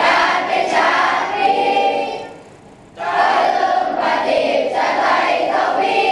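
A group of schoolchildren singing together in unison, with a short break about two seconds in before the singing picks up again.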